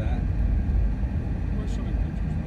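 Steady low rumble of a car driving, engine and tyre noise heard from inside the moving vehicle.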